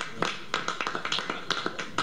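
A few people clapping: scattered, uneven hand claps, several a second.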